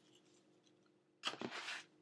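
Small torn pieces of copy paper dropped into a container of water to make paper pulp: a short rustling noise a little over a second in, after a near-quiet start.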